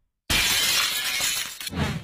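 Glass-shattering sound effect: after a brief silence, a sudden loud crash about a quarter second in, then a spray of breaking glass that trails off near the end.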